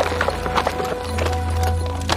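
Horse hooves clip-clopping on a hard street, a quick run of irregular strikes, over background music with long held notes.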